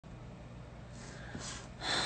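A young woman breathing close to a phone microphone: soft breaths, then a sharper intake of breath near the end, just before she speaks.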